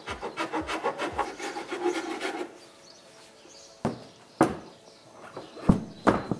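Hand file rasping back and forth on the edge of a glider canopy frame, about four quick strokes a second, widening a cutout for a Rögerhaken; the filing stops about two and a half seconds in. A few sharp knocks follow in the second half.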